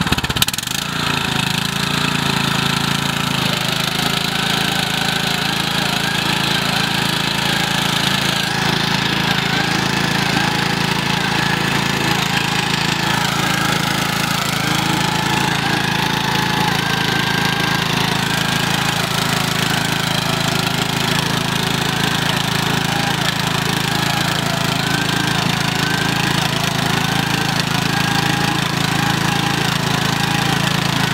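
Riding lawn mower's small engine catching right at the start and then running steadily as the mower tries to drive out of deep mud it is stuck in.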